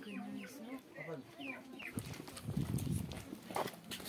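A chicken clucking several short times over low murmuring voices, with the voices growing louder in the second half.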